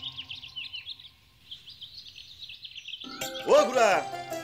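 Many small birds chirping rapidly and faintly. About three seconds in, a much louder sound with a sliding pitch cuts in over them.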